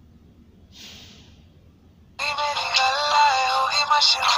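A song with a sung vocal and backing music starts suddenly about two seconds in, played loud and thin through a Jio feature phone's small loudspeaker.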